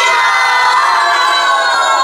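A class of young schoolchildren shouting together in unison, one long drawn-out cheer held on a single pitch.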